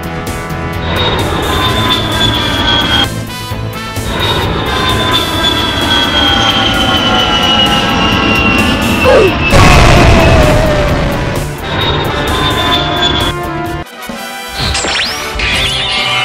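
Dubbed action sound effects: a high jet whine falling slowly in pitch, then a loud explosion about nine and a half seconds in, all over background music.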